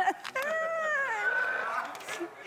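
A woman's voice in one long, high-pitched drawn-out cry that rises a little and then falls, lasting about a second and a half.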